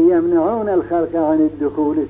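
A man's voice speaking, with long held pitches, over a steady low hum.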